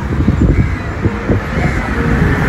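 Wind buffeting the microphone in gusts, with a couple of faint bird calls above it.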